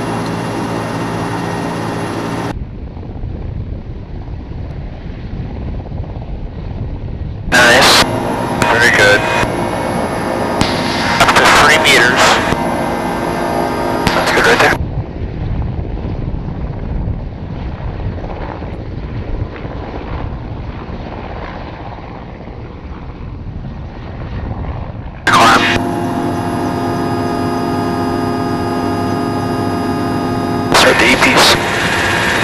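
Mil Mi-17 helicopter heard from inside the cockpit: its twin turboshaft engines and gearbox run with a steady whine of many fixed tones. For most of the middle the sound switches to the helicopter heard from outside, a duller rushing rotor noise with a louder stretch of noise. The cockpit whine returns near the end.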